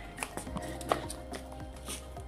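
Background music with sustained tones, and several short clicks and taps at uneven spacing over it, the sharpest about a second in.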